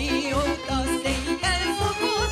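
A Hungarian nóta played live by a small Gypsy band: violins, cimbalom and double bass. A melody line with wide vibrato sits on top, over held accompaniment chords, and the double bass marks the beat about twice a second.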